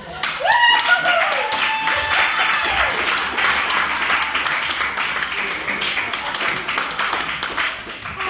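Small audience applauding, with whoops and cheers rising at the start and a steady run of hand claps after.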